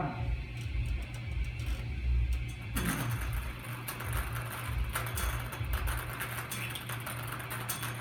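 A wire bingo cage being turned, its numbered balls rattling and tumbling inside in a dense clatter that starts about three seconds in.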